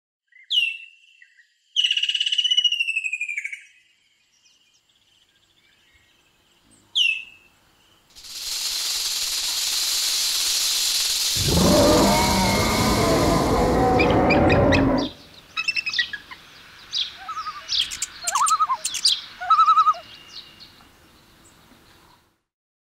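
Bird calls. A sharp call comes first, then a fast, harsh run of repeated notes about two seconds in, then another single call. A long steady rush of noise follows, deepening and at its loudest after about eleven seconds, and is followed by scattered short chirps and clicks.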